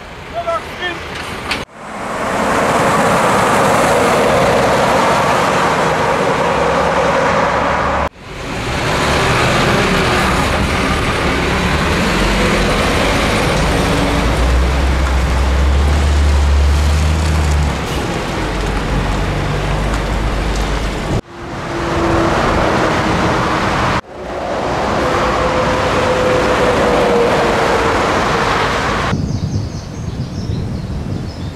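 DAF XF diesel trucks pulling tipper trailers driving past close by, engines running with tyre noise, in several short segments that start and stop abruptly. The low engine rumble is strongest about halfway through.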